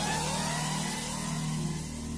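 A vehicle engine accelerating, its pitch rising and then levelling off as it fades, over a low steady hum.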